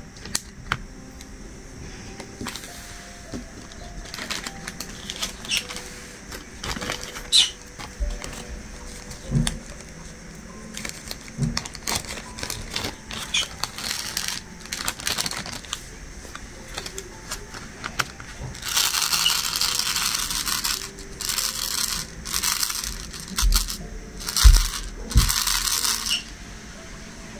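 Small clicks and taps of diamond-painting drills and tools being handled, with a couple of seconds of rustling noise about nineteen seconds in and shorter bursts near the end.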